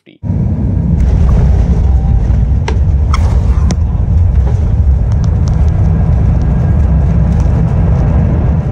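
Airbus A350-900 on its landing roll, heard inside the cabin by the window: a loud, steady low rumble of the wheels on the runway mixed with the engines, and a few short clicks or rattles about three seconds in.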